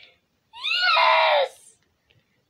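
A young girl lets out one loud, high-pitched scream about a second long, starting about half a second in, its pitch rising and then falling away.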